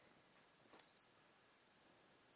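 A short, high-pitched electronic beep in two quick pulses, just under a second in, over near silence.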